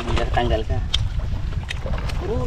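Steady low wind rumble on the microphone, with a man's voice briefly at the start and two short sharp clicks later on.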